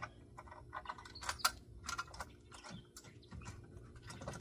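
Faint, irregular small metallic clicks and ticks as bolts are threaded by hand into a steel winch mount.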